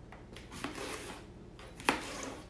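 Knife blade pushed down through the slots of a plastic salad cutting bowl, cutting the lettuce, spinach, cucumber and egg packed inside: soft crunching and rustling with a few light ticks, and one sharp knock near the end.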